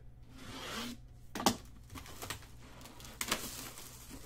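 Clear plastic shrink wrap being torn and pulled off a sealed trading card box: a rasping tear, then scattered crinkles and crackles of the loose plastic.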